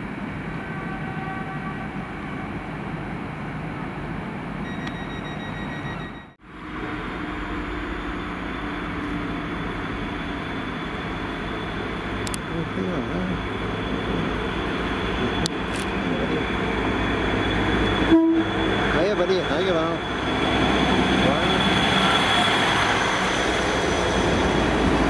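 Platform crowd chatter, then a Transport for Wales Class 231 diesel multiple unit coming into the platform, growing louder, with a steady high whine and a short horn toot about three-quarters of the way in.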